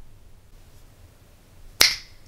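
A single finger snap near the end: one sharp, short click.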